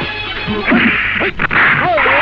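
Film fight sound effects: loud rushing swishes and a sharp punch hit about halfway through, with a man's grunts and shouts.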